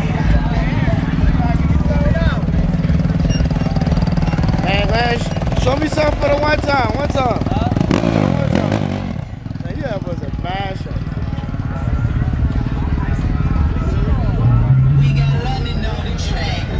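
Crowd chatter over a steady engine rumble. About halfway through, a sport quad's engine revs briefly as it rides past.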